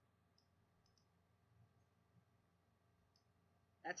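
Near silence with a few faint, short computer-mouse clicks.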